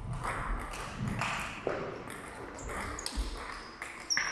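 Table tennis rally: a plastic ball struck by bats and bouncing on the table, several sharp clicks at an uneven pace.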